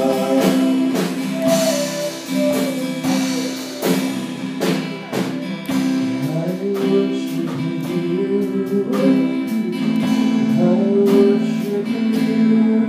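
A live church praise band playing a worship song: strummed acoustic guitar with the band, and voices singing over it in the second half.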